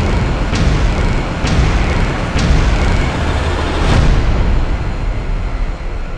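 Cinematic trailer sound effect of massive concrete walls collapsing: a dense, deep rumble with about five sharp crashing impacts in the first four seconds, easing off toward the end.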